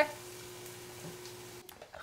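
Faint, steady sizzle from a covered frying pan of potatoes and broccoli in oil steaming on a gas stove, cutting out near the end.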